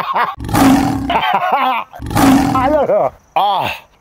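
Donkey braying sound effect: two loud, harsh hee-haw brays about a second and a half apart. It is dubbed over a man's gagging to mask it.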